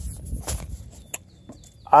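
Footsteps on the boards of a wooden footbridge with handling noise from the phone: low thumps near the start, then a couple of faint clicks.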